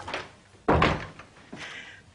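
A door shutting with a single short, loud thud about two-thirds of a second in.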